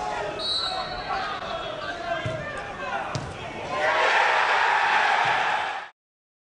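Football players shouting on the pitch, a short referee's whistle blast near the start, and two dull thuds of the ball being struck; then, about four seconds in, crowd cheering breaks out as the goal goes in, the loudest part, cut off suddenly at the end.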